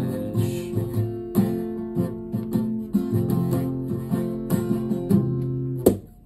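Acoustic guitar strummed in a steady chord rhythm with no voice. It ends with a sharp final strum that is cut off abruptly at the very end.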